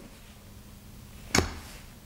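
Quiet room tone with a single short, sharp click a little over a second in.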